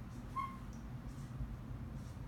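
A dry-erase marker writing on a whiteboard, with one short high squeak about half a second in and a few faint strokes, over a low steady hum.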